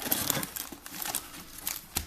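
Wrapped trading-card packs crinkling and cardboard rustling as the packs are handled and pulled from a hobby box, with scattered small clicks.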